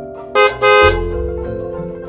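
Two honks of a cartoon truck horn sound effect, a short one and then a longer one, both loud, over light mallet-percussion background music.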